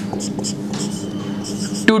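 Marker pen writing on a whiteboard in several short, high scratchy strokes, over a steady low hum.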